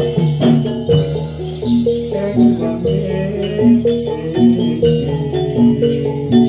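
Javanese gamelan music for a jathilan dance: struck metal keys ringing out a steady, repeating melody, with occasional drum strokes.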